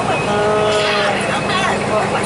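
Bus running at highway speed, heard from inside the cabin as a steady drone. Near the start a held, slightly falling pitched sound lasts under a second, and bits of voice follow.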